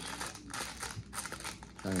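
Clear plastic packaging crinkling and rustling as it is handled and pulled at to get it open, with irregular small crackles.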